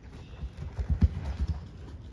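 A horse's hooves thud dully on soft indoor-arena footing as it trots past, the hoofbeats loudest about a second in.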